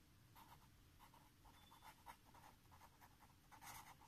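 A pen writing on paper, heard faintly: a run of short scratchy strokes as a word is written, slightly louder near the end.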